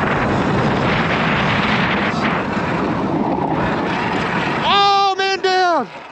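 Wind buffeting the helmet camera's microphone while riding a Sur-Ron electric dirt bike along a dirt track. Near the end a person gives a long, loud yell that drops in pitch as it ends.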